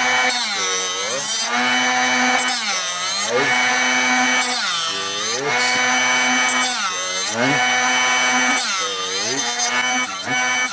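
Drill Doctor 500X drill-bit sharpener running, its diamond wheel grinding a twist drill bit as the chuck is turned by hand in the sharpening port. The motor's pitch drops and recovers about every two seconds as each side of the bit is pressed into the wheel. The grinding noise means metal is still being taken off the point.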